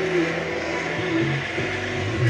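Music playing from an FM radio broadcast, with steady held notes in the low range and vehicle running noise beneath it.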